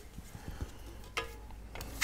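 Steel Venetian trowel scraping lightly over a thin wet decorative coating on a sample board, with faint scrapes, small ticks and a short sharper scrape about a second in, as ridges of excess coating are smoothed away.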